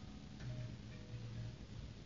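Harp played softly: the previous notes ring away at the start, then sparse, quiet low plucked notes follow, with a faint click about half a second in.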